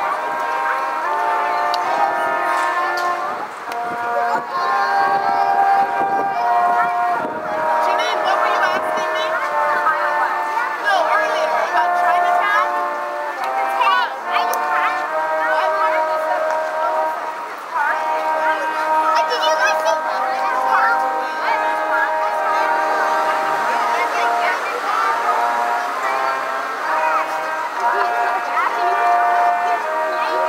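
Brass quartet of two trumpets and two trombones playing a tune in harmony, held notes moving from pitch to pitch, with people's voices in the background.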